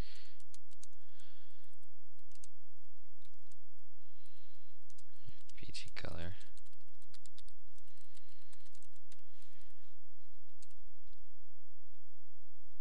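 Computer keyboard typing: irregular key clicks over a steady low hum. A brief vocal murmur about six seconds in.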